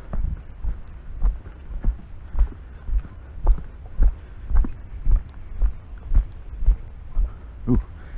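Footsteps of a hiker walking at a steady pace on a packed-dirt forest trail, close to the microphone: dull thuds, about two steps a second.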